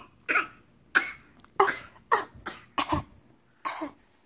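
A person's short, breathy vocal bursts, about seven in four seconds, each sudden and quickly fading, heard as coughs or coughing laughter.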